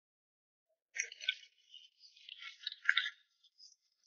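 Starting about a second in, the nylon mesh of a cage fish trap rustles and scrapes in irregular bursts, and the catch rattles out into a plastic basin as the trap is shaken and emptied.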